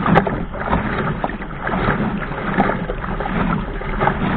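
Water rushing and slapping against a sailing dinghy's hull as it sails through choppy waves, with frequent irregular splashes and spray close to the camera.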